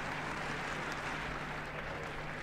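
Audience applauding steadily on an old live recording, with a faint steady low hum underneath.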